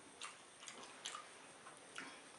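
Faint, wet eating sounds: a few soft clicks and smacks of chewing and of hand-eating slimy ogbono-and-okra soup with chicken.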